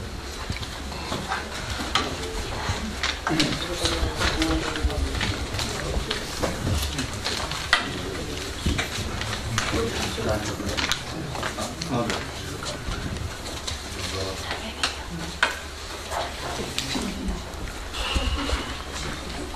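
Indistinct background chatter of several people in a meeting room, with scattered small clicks and knocks over a low steady hum.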